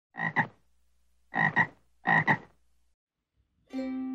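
A frog calling three times, each call a short two-part ribbit, about a second apart. Plucked ukulele music starts near the end.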